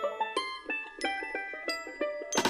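Background music: a light plucked-string melody of quick separate notes, with the bass dropped out.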